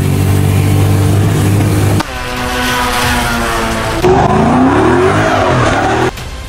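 Three quick cuts of car engine sound: a steady, low engine drone from inside a moving car, then cars running down a race track straight, then an engine revving with a rising pitch.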